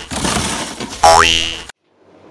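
Cartoon 'boing' sound effect: a springy twang whose pitch glides upward, heard once about a second in after the tail of an earlier one, then cut off abruptly near the end.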